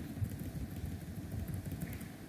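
Low, steady background rumble with no speech, probably room or distant traffic noise picked up by the microphone.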